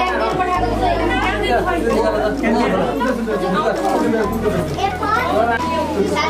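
Many people talking at once in a room, with overlapping adult and children's voices, over a steady low hum.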